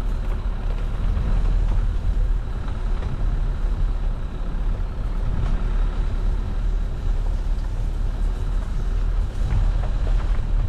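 Dacia Duster driving along a rough dirt lane: a steady low engine and tyre rumble with no change in pace.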